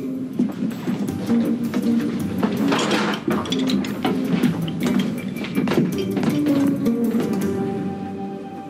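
Background music score with held notes that step from pitch to pitch.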